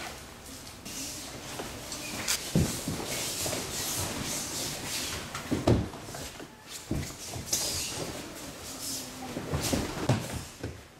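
Aikido throws and breakfalls: bodies landing and rolling on the mat in four or so dull thumps, the loudest about halfway through, with the steady rustle and swish of cotton gi and hakama.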